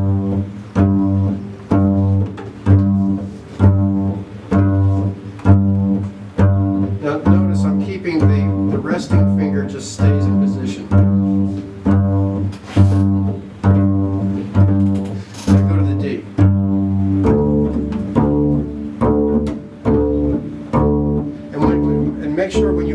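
Double basses plucked pizzicato together in steady time, a repeated low note sounding with even plucks, as a slow articulation exercise. About seventeen seconds in the repeated note moves to a lower pitch.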